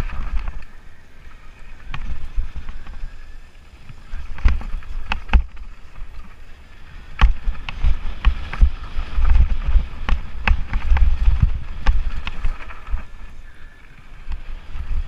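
Lapierre Spicy 327 full-suspension mountain bike descending a rough, rocky trail: frame, chain and suspension rattling, with repeated sharp knocks from rocks and bumps over a low wind rumble on the camera microphone. The knocks come thickest and loudest over the second half.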